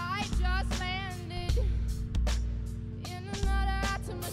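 Live band music: a female voice sings two phrases over a drum kit keeping a steady beat and deep sustained bass notes.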